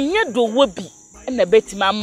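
Crickets chirring steadily, a continuous high-pitched drone running under a woman's talking.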